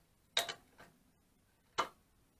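Two sharp metallic clinks, about a second and a half apart, from a spanner on the steel rear brake linkage of a Zündapp CS 25 moped being fitted.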